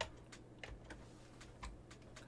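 A handful of faint, irregular clicks from a computer keyboard.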